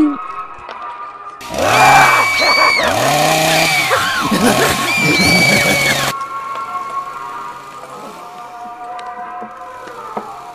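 Background music, with a loud sound effect about a second and a half in: its pitch rises and falls over and over, it lasts about four and a half seconds, and it cuts off suddenly.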